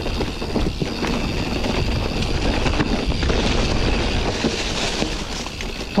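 Orbea Oiz mountain bike rolling down a rough, rocky dirt singletrack: a steady rumble of tyres over dirt and stones, with a constant clatter of small knocks and rattles from the bike as it bounces over the ground.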